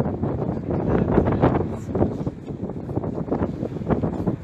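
Wind buffeting the microphone on a sailboat's deck: a loud, uneven rumble that swells and dips with the gusts.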